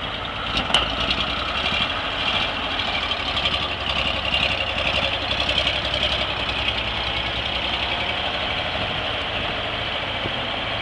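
A 1949 Corbitt T-22 truck's gasoline engine running steadily as the truck pulls away. There is a sharp click just under a second in.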